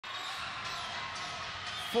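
Basketball arena ambience: a steady murmur of crowd voices through the hall.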